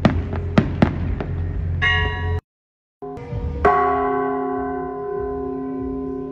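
Several sharp firework bangs in quick succession. After a brief silent break, a church bell is struck once about three and a half seconds in and rings on, its tones fading slowly.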